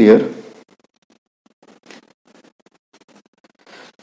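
Computer keyboard being typed on: a scatter of faint, light key clicks spread over a couple of seconds.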